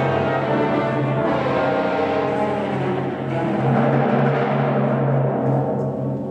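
Symphony orchestra playing a loud, sustained passage, bowed strings with timpani.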